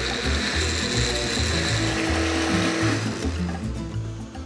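Countertop blender running, blitzing tomatoes, garlic and herbs into a smooth salsa, with a steady high motor whine over the churning; it winds down near the end. Background music with a bass beat plays underneath.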